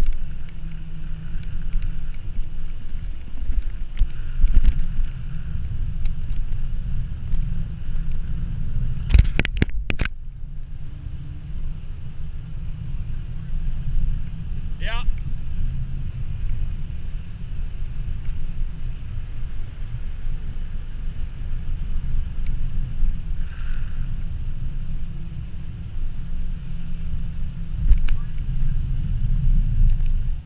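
Wind buffeting the microphone of an action camera on a mountain biker speeding down an asphalt road, a steady low rumble mixed with tyre noise. A cluster of sharp knocks comes about nine seconds in, and a brief wavering squeal about fifteen seconds in.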